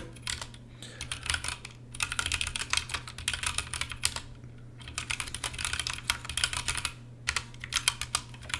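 Typing on a computer keyboard: quick runs of keystroke clicks, with short pauses about halfway through and again near the end.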